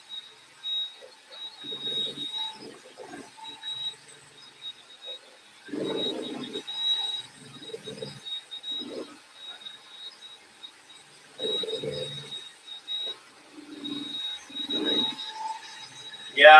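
Cordless drill turning a mixing paddle through epoxy resin in a plastic bucket, with a thin high motor whine that comes and goes.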